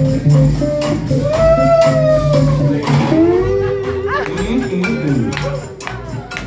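A live blues band playing: a steady low bass line and crisp percussion clicks under a lead instrument holding long notes that bend up and slide down.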